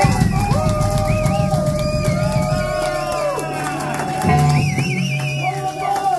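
Rock band playing live at full volume: electric guitars with sustained, wavering notes over bass and drums.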